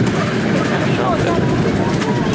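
Steady rumble of a miniature steam train in motion, heard from a riding car, its wheels running along the track.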